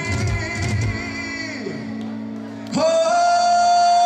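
Live band music: keyboards and drums play and die down over the first second and a half, then near the three-second mark a male singer comes in on a loud, long held note.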